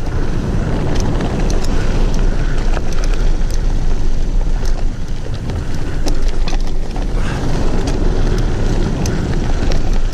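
A mountain bike rolling fast down a dirt forest trail: a steady low rumble of tyres and wind buffeting the microphone, with frequent sharp clicks and rattles from the bike as it goes over bumps.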